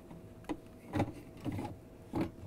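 Plastic EveryDrop water filter cartridge being slid into the ice maker's round filter housing: three light plastic knocks and scrapes about half a second apart.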